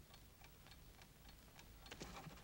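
Wind-up alarm clock ticking faintly and steadily, about four ticks a second.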